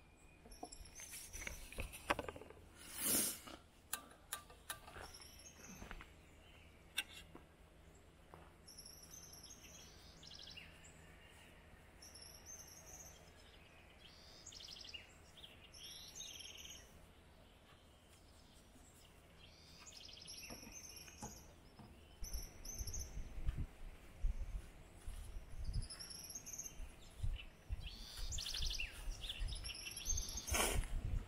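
Wild birds chirping and calling at intervals around a campsite, with a few sharp knocks of plastic containers and dishes being handled in the first few seconds. A low rumble comes in for the last several seconds.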